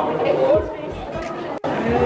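Background chatter of several people's voices in a large indoor hall, with a brief dropout about one and a half seconds in.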